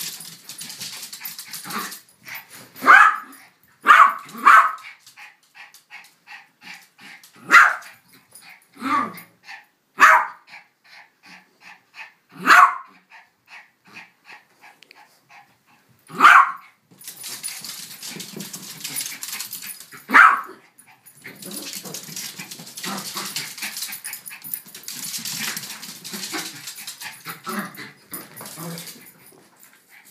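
Two small dogs, a Yorkshire Terrier and a Cavalier King Charles Spaniel puppy, play-fighting: about eight sharp barks spread over the first twenty seconds, with scuffling noise between them and for most of the rest.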